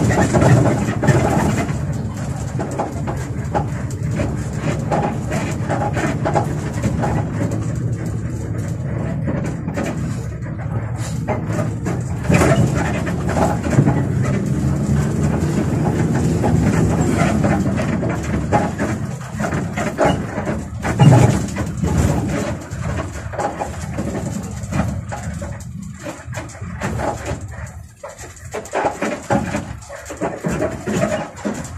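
A moving bus heard from the driver's cab: engine running and road noise, with frequent rattles and squeaks from the cab fittings and a louder jolt about twenty seconds in.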